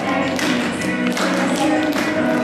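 A group of students singing a song to backing music with a steady beat of sharp taps.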